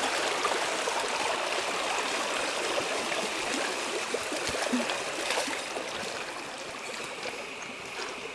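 Shallow stream running over rocks, a steady rush of water, with a few splashes from feet wading through it; it grows a little quieter near the end.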